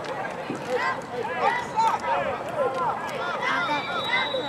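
Many overlapping voices of children and adults calling out and talking at once, with no single voice clear.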